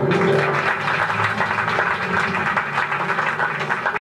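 Theatre audience applauding: a dense clatter of many hands clapping that breaks out suddenly as the song ends.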